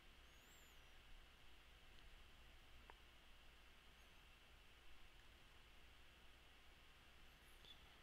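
Near silence: faint steady hiss, with a few faint high chirps near the start and near the end.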